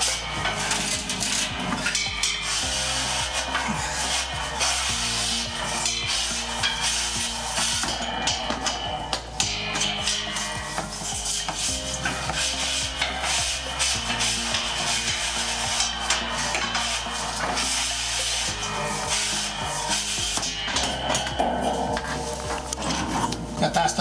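A wire flue brush on a long rod is pushed in and pulled out of the stainless-steel heat-exchanger tubes of an oil-fired grain-dryer furnace. It makes a continuous scraping rasp of bristles on metal as it scours the soot off the tube walls.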